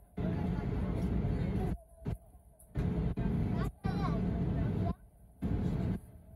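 Airliner cabin sound during taxi, with muffled, unintelligible voices. It cuts in and out abruptly five or six times, typical of a faulty phone microphone.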